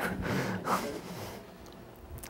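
A man's breathy laughter trailing off, followed by quiet room tone for the last second or so.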